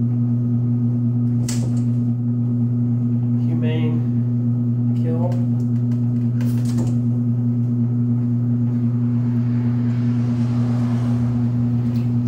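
A loud, steady low electrical hum, like a motor or appliance, with two brief scuffs or knocks, one about a second and a half in and one about six and a half seconds in.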